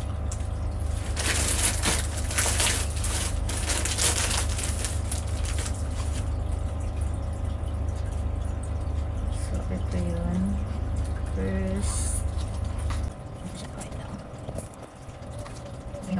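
Plastic parcel packaging rustling and crinkling as it is handled and opened, loudest in the first few seconds, over a steady low hum that cuts off suddenly near the end. A few brief murmurs of a voice come in just before the hum stops.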